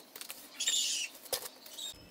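Steel trowel working wet cement mortar on a brick oven top: soft scraping, with a louder high-pitched half-second sound about a third of the way in and a sharp tap a little later.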